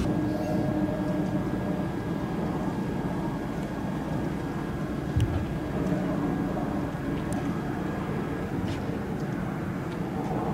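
A steady low rumble with a few faint steady tones over it, and a single short thump about five seconds in.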